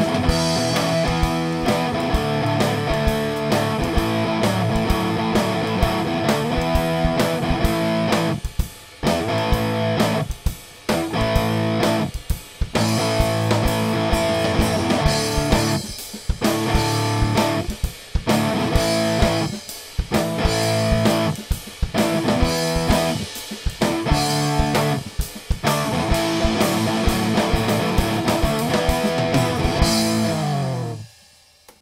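Playback of an electric guitar part recorded through the Ampire amp-simulator plugin, playing along with a drum track at 130 bpm. From about eight seconds in, the guitar and drums stop briefly roughly every two seconds, in stop-time breaks.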